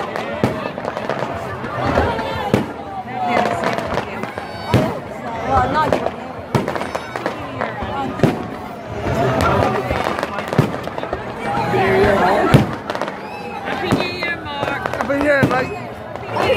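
A fireworks display: shells bursting overhead in a string of irregular bangs and crackles, the loudest bang about twelve and a half seconds in.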